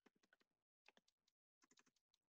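Faint runs of quick clicks and taps, broken by two short silent gaps.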